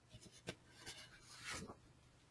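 A few faint clicks and a brief rustling scrape about one and a half seconds in.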